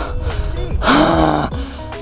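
A man gasping heavily for breath, out of breath after a steep uphill climb: two big, partly voiced breaths, the second about a second in. Background music plays underneath.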